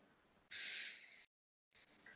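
A deep breath in, heard as one short airy hiss lasting under a second, starting about half a second in, over a video-call connection.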